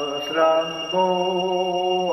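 A man's voice intoning in a chant-like, sing-song way, drawing out syllables; about halfway through he settles on one long held note. A thin steady high-pitched whine sits underneath.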